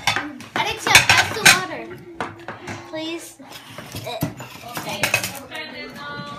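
Plates and cutlery clattering and clinking as they are set down and pushed together on a table, with a series of sharp knocks, the loudest about a second and a second and a half in. Voices murmur between the knocks.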